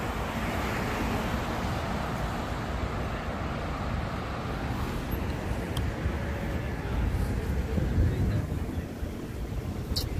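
Road traffic passing on a city avenue, a steady rumble and hiss of cars and tyres, with wind buffeting the microphone. It swells a little about seven to eight seconds in.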